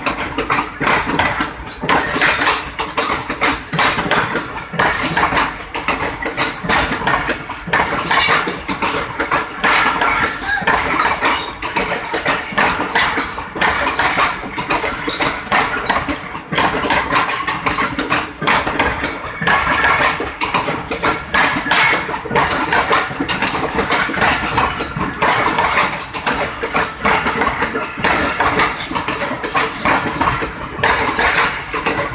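Passenger coaches of an express train rolling slowly past at close range. Their steel wheels on the rails and joints, and the running gear, make a dense, continuous metallic clatter and clanking that stays at the same level throughout.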